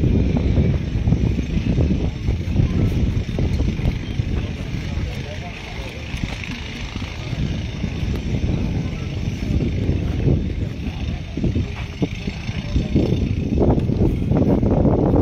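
Wind rumbling and buffeting on the microphone, swelling and easing, over an indistinct murmur of voices from the crowd.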